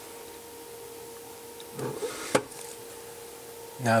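Quiet room with a faint steady electrical hum. About two seconds in there is a short vocal murmur, followed by a single sharp click.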